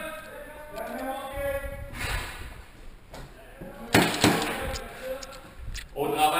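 Voices in the first two seconds, then two sharp bangs about four seconds in, a quarter of a second apart.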